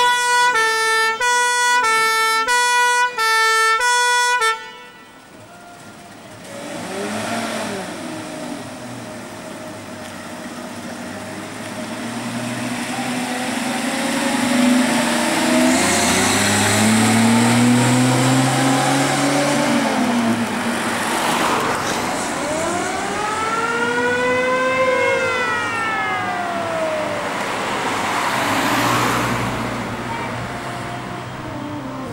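Two-tone fire engine horn sounding alternating high and low notes, cutting off suddenly about four and a half seconds in. Then the vintage Austin fire engine's engine revs up and down as it drives past, with traffic noise.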